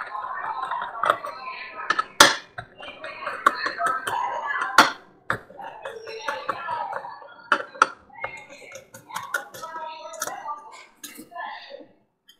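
Scattered sharp metallic clicks and clinks from a screwdriver and the parts of an opened Western Digital desktop hard drive being handled, over indistinct background voices.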